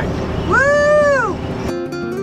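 A cat meows once, a single long call that rises and falls in pitch, over the hum of the moving bus. Near the end the bus noise cuts out and acoustic guitar music begins.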